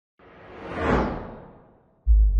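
Whoosh sound effect of a logo intro, swelling to a peak about a second in and then fading away, sinking in pitch as it dies out.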